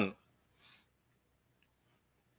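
Quiet room after a spoken word ends at the very start, with one brief, faint rustle about two-thirds of a second in and a few tiny ticks.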